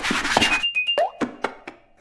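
Cartoon sound effects with a short music cue: a rushing hiss carrying a few sharp pops and a quick run of high stepping notes, with a brief rising pitch about a second in, fading out before the next line of dialogue.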